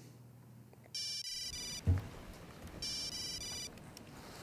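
Mobile phone ringtone: two electronic rings about two seconds apart, each a quick run of high beeps. A dull thump falls between the two rings.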